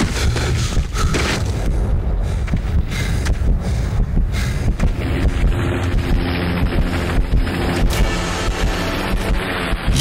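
Loud, steady low rumble with rushing wind-like noise and scattered irregular knocks; about halfway through, a low humming tone joins in.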